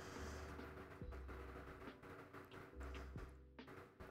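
Faint sound of a long kitchen knife slicing through a meatloaf on a foil-lined sheet pan, with a few soft taps about a second apart over a steady low hum.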